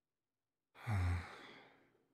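A man's sigh, a low voiced exhale that starts just under a second in, peaks briefly and trails off.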